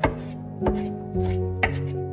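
Chef's knife chopping fresh parsley on a wooden cutting board: three sharp knife strikes on the board, under a second apart, over soft background music.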